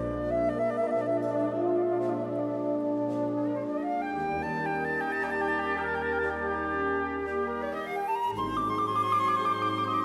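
Wind band playing live: held brass and woodwind chords, broken by quick rising runs about four and eight seconds in, with a trilled high line over the last part.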